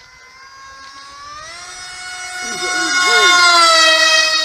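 Small remote-control model plane's motor whining as it flies close by, rising in pitch about a second and a half in and growing louder to a peak near the end, then dipping slightly in pitch.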